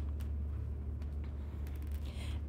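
Room tone: a steady low hum with a faint hiss.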